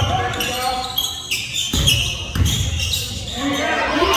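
Basketball being dribbled on a hardwood gym floor: a run of uneven thuds that echo in a large hall, with voices shouting over them.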